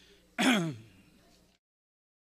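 A man clears his throat once, a short, loud burst that falls in pitch, picked up by a microphone during a mic check. The audio then cuts out to dead silence about a second and a half in.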